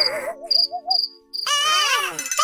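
Cartoon sound effect of a cricket chirping: short, high chirps repeating about three times a second over a wobbling lower tone that stops about a second in. Near the end, a falling sliding sound comes in.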